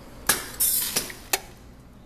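Pneumatic gate of a seed weigh-filler's stainless weigh bucket cycling. There is a sharp metallic click, then a brief hiss, then a second click about a second later.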